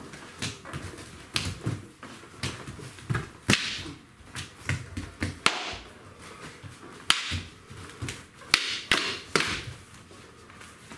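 Sparring weapons striking: a dozen or so sharp clacks at irregular intervals as sticks and a training tomahawk hit each other, the buckler and padded gear.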